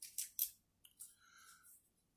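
A few light clicks and scrapes from a small knife and its sheath being handled, several close together at the start and one more about a second in.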